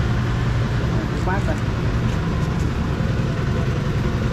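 Generator set running steadily: a small engine driving a 5.5 kVA, 220 V Italian-made alternator, giving an even low drone that does not change.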